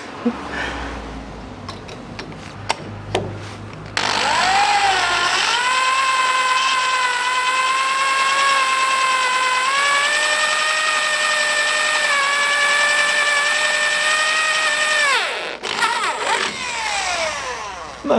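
Electric drill with a titanium bit drilling out a broken, rust-seized stainless bolt in the steel body of a 1982 Land Rover Series III. After a few light clicks, the motor winds up with a rising whine about four seconds in, holds a steady high whine for about eleven seconds, then spins down with a falling whine near the end.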